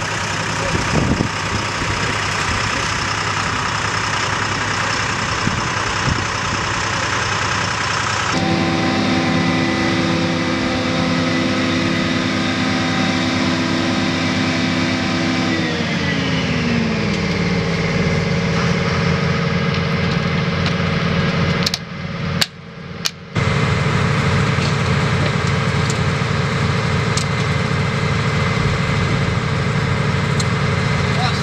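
Steady engine and machinery noise on a carrier flight deck, a loud drone carrying several steady pitched hums. Partway through, a set of tones slides down in pitch. A little past twenty seconds the sound briefly cuts out.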